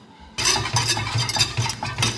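Almond-butter and maple-syrup caramel sauce cooking in a small saucepan on a gas burner: a steady sizzle over a low rumble, with a few small clicks, starting suddenly about half a second in.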